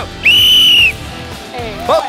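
One short, loud, steady blast on a referee's whistle, lasting well under a second.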